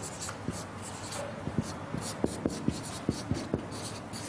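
Marker pen writing on a whiteboard: a quick run of short scratchy strokes, with light knocks as the tip is set down on the board.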